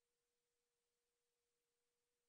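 Near silence, holding only an extremely faint steady tone.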